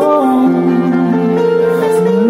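A man singing into a microphone, holding his notes, over sustained electronic keyboard chords.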